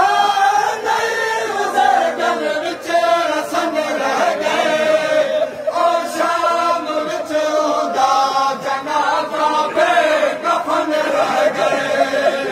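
A large crowd of men chanting a Shia noha (lament) together, the melody rising and falling, with sharp slaps of matam (hand-beating in mourning) cutting through at intervals.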